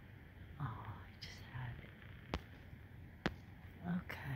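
Faint whispered and murmured speech from a woman over a low steady hiss, with two sharp clicks about a second apart after the middle.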